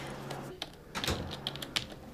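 Typing on a computer keyboard: irregular key clicks starting about a third of the way in.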